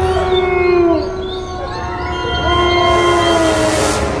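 Eerie horror-film score: several long held tones over a low rumble, with some of them sliding down in pitch about a second in and again near the three-second mark.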